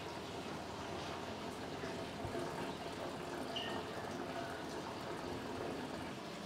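Steady trickling and bubbling of water circulating through an aquarium rock-pool touch tank, with a brief high chirp about three and a half seconds in.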